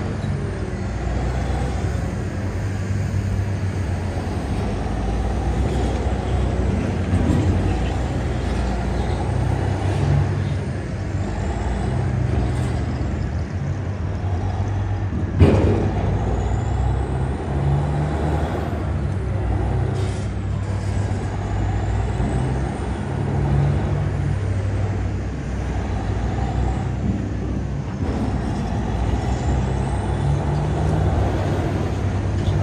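Caterpillar 993K wheel loader's diesel engine working under load, its note swelling and easing every few seconds as the machine pries at marble rubble with its spike attachment. A single sharp knock comes about halfway through.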